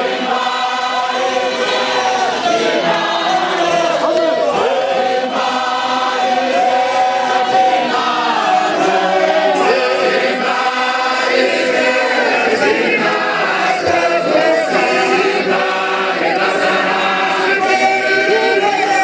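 A large group of voices singing together, many overlapping lines held at a steady level.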